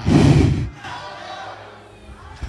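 A loud, breathy shout blasted into a handheld microphone, lasting about half a second, then a faint steady hum from the sound system.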